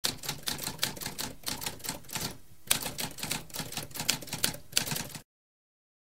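Typewriter typing: rapid keystrokes, about five a second, with a short pause about halfway through, then stopping abruptly about five seconds in.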